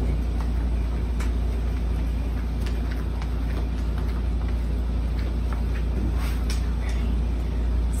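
Steady low background rumble of room noise, with a few faint knocks and shuffles as one person leaves her seat and another walks in and sits on a folding chair.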